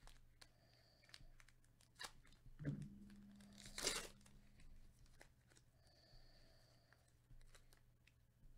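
Foil trading card pack being handled with small crinkles and clicks, then torn open with one loud rip about four seconds in, just after a low thump.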